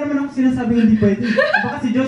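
People talking with chuckling laughter mixed in.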